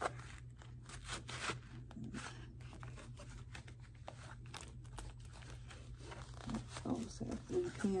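Rustling and small clicks of pens being pulled out of a fabric pen pouch and handled, the pens knocking lightly against each other.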